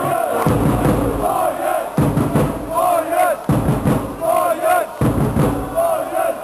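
Ice hockey supporters chanting in unison to a bass drum beat, one short chant phrase repeating about every one and a half seconds.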